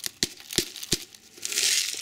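Coarse mineral substrate granules poured over seeds in a clear plastic cup: a few sharp separate clicks as stones drop in, then a brief hiss of grit sliding near the end.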